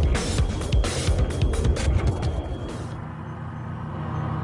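Background music over a loud rushing, scraping rumble with rapid clatter, which eases off about three seconds in. The rumble is an armoured vehicle on its pallet skidding across sand after a low-altitude parachute extraction (LAPES) drop.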